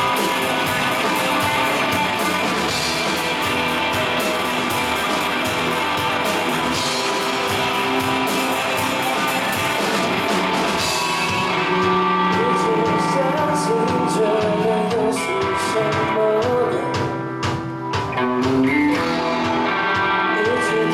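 Rock band playing live: distorted electric guitars, bass and drums with cymbals. About halfway through, the cymbals drop back and clearer held and wavering melody notes come forward.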